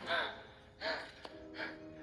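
A woman's short, shaky gasps, three in quick succession, as she kneels on the floor holding her mouth, over a low, sustained film score.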